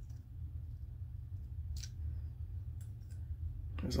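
A few faint clicks of a removed brass T&P relief valve being handled and turned over in the fingers, over a low steady rumble.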